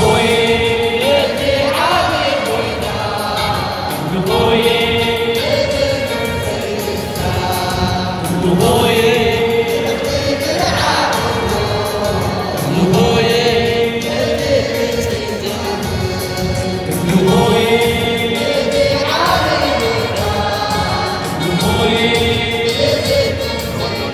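Eritrean Catholic mezmur: a choir singing a hymn in short phrases that repeat about every two seconds.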